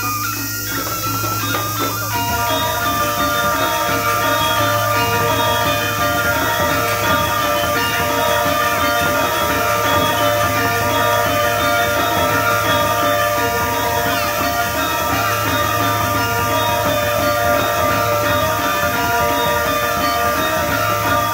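Balinese gamelan music: an ensemble of metallophones plays a dense, steady interlocking pattern of ringing pitched tones over a low sustained tone, growing fuller about two seconds in.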